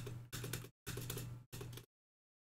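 Clicks from a computer keyboard, picked up by a microphone that cuts in and out in short stretches, with a low hum under each stretch.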